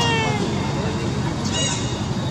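A baby macaque calling: a drawn-out, slightly falling call at the start, then a short high squeak about a second and a half in.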